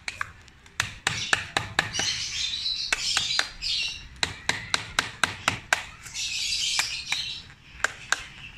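A mallet striking a wood chisel into bantigue deadwood, carving the bonsai's trunk: sharp separate taps, irregular at about three a second. Birds chirp in the background.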